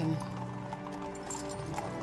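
Horse hooves clip-clopping on stone, under soft background music with long held notes.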